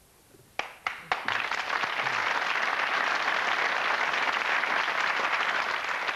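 Studio audience applause: a short hush, then a few single claps about half a second in, swelling within a second into steady applause.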